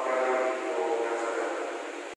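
Church music holding one long chord of several steady pitches, fading toward the end.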